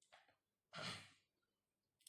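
Near silence, with one faint breath from a man, a sigh-like exhale, a little under a second in.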